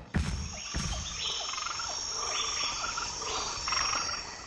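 Nature ambience of frogs croaking and insects trilling: a steady high insect tone with short, repeated falling calls about four a second.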